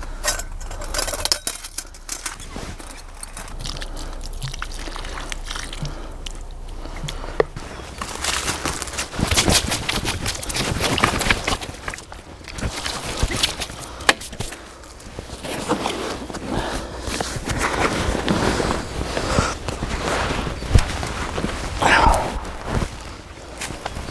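Handling of gear on dry forest-floor leaves, with scattered clicks and rustles, then denser rustling and footsteps through dry leaf litter from about eight seconds in.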